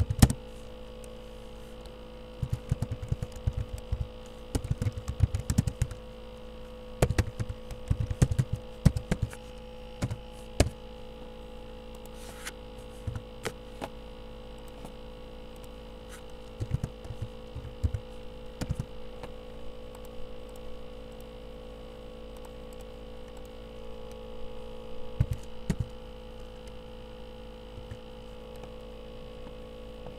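Steady electrical hum with bursts of computer keyboard typing, quick runs of short clicks, several times.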